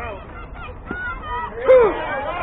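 Voices calling out across a ball field, topped near the end by one loud, short shout.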